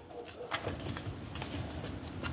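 Pages of a paper instruction booklet being turned, with a few light paper clicks, over a faint low pulsing sound.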